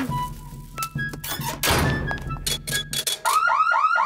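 Cartoon washing-machine sound effects over light background music: a thunk as the door shuts, a few clicks as the dial is turned, then a quick run of rising-and-falling bloops as the machine starts.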